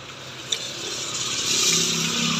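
Small motorcycle passing on a rain-wet road: the hiss of its tyres on the wet asphalt swells over the first second and a half, and its engine note rises beneath it as it comes level.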